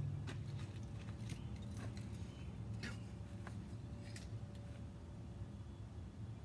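Small dog moving about on a wooden board: scattered light clicks and rustles over a low steady background hum.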